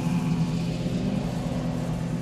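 Background music's low sustained drone, several steady low tones held without change.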